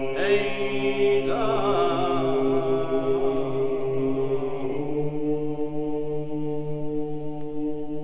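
Georgian male folk ensemble singing a Kartlian ritual song in polyphony: a low held drone with a solo upper voice winding and ornamenting above it. About five seconds in, the voices move onto a new chord and hold it.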